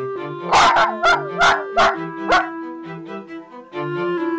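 A toy poodle barking five times in quick succession, short barks about two seconds in all, over background music.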